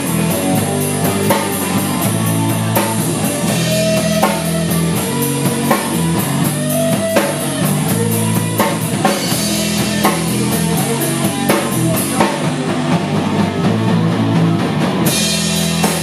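Live rock band playing: electric bass, electric guitar and drum kit keeping a steady beat.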